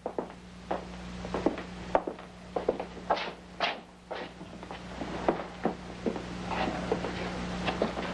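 Footsteps and scattered short knocks and squeaks on a hard floor, over a steady low hum.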